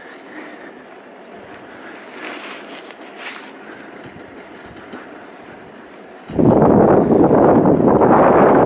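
Faint steady background noise, then about six seconds in a sudden loud rush of wind buffeting the microphone that keeps on.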